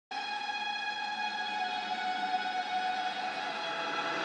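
A single sustained synthesizer note, rich in overtones, starts abruptly and is held steady: the opening of a song's intro.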